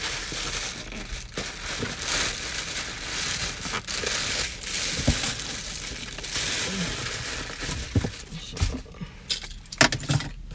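Packing material and cardboard crinkling and rustling as a mailed box is unpacked by hand, with a few sharp knocks near the end as the item is lifted out.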